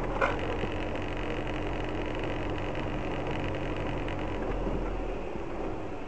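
Car engine running steadily at low speed, a low even hum heard from inside the cabin as the car creeps along a snowy street.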